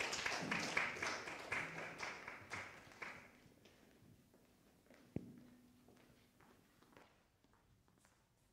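Applause from a small audience, a few people clapping, fading out about three seconds in. About five seconds in comes a single sharp knock with a short low ring, then faint tapping footsteps.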